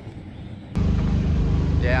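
Loud, steady drone of sprint car racing engines running, starting abruptly under a second in after a quiet moment, with a man's voice beginning near the end.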